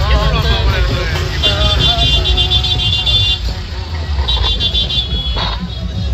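Loud street procession music with heavy drumming and crowd voices. A high, shrill, steady tone sounds twice over it, the first from about a second and a half in, the second near the end.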